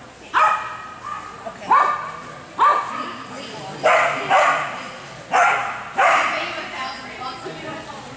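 A dog barking about seven times, a sharp bark every half second to second or so, each one fading into the echo of a large indoor hall.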